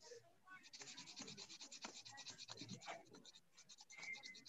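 Faint, rapid scratching strokes, about ten a second, thinning out in the last second.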